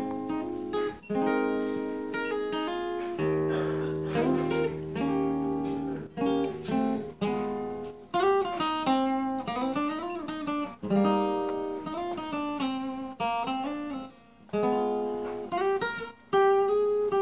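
Solo acoustic guitar played by hand, a mix of picked notes and strummed chords in short phrases with brief pauses between them. Several notes are bent, their pitch curving up and back down.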